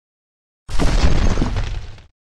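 Sound effect of stone cracking and breaking apart, starting suddenly about two-thirds of a second in with a heavy low rumble under it and dying away over about a second and a half.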